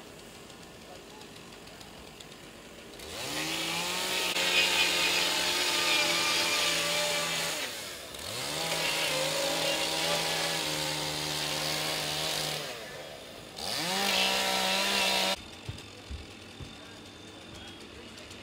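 Two-stroke chainsaw run up to full speed three times, each burst holding steady: two long runs of about four and a half seconds each, then a shorter one near the end. These are firefighters cutting into the roof of a burning house to ventilate it.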